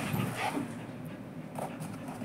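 A dog's soft play noises, a few short huffs and grumbles, as it play-bites a person's hand.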